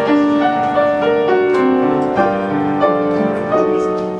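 Piano playing the introduction to a slow ballad, a melody over sustained chords with a new note about every half second.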